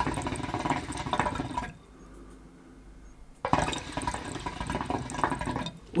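HookahMerce Blessed Black Forest hookah bubbling with no diffuser fitted: full, hearty bubbling as smoke is drawn through the water, in two pulls. The first ends shortly before two seconds in, and the second starts after a short pause about three and a half seconds in.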